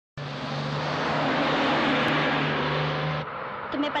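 A bus driving along a road: its engine runs with a steady low hum under heavy road noise. The sound cuts off abruptly a little after three seconds.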